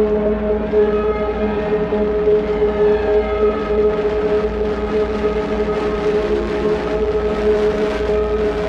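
Ambient electronic drone: several steady held tones, with fainter, higher notes that come and go in the first few seconds.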